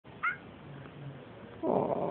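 A domestic cat gives one very short, high meow about a quarter second in. Near the end there is a soft rustle of a hand stroking its head.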